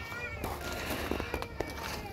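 Puppy whimpering: high, wavering cries near the start, with a few light knocks.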